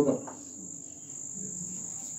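A steady, unbroken high-pitched tone runs on during a pause in speech, with the last syllable of a man's voice at the very start.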